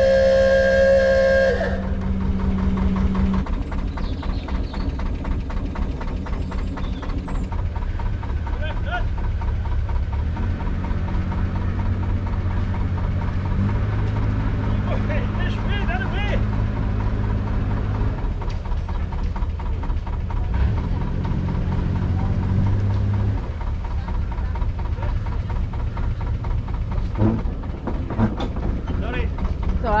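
A boat horn sounds one long steady blast through the first second and a half or so. Under it and throughout, a narrowboat's diesel engine runs steadily at cruising speed, then eases off about three-quarters of the way through.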